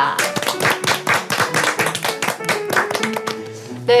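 A small group of people clapping, a quick run of claps that thins out and stops about three seconds in, over background music.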